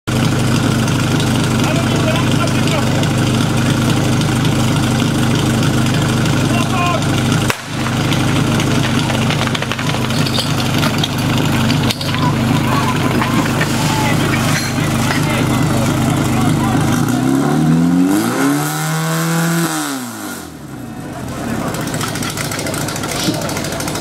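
Portable fire pump engine running steadily, then revved up and back down near the end, while the team struggles to get water flowing. Voices shout over it.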